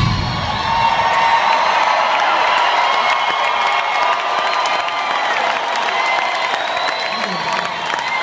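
A large concert crowd cheering and whooping at the end of a rock song. The band's music stops just at the start.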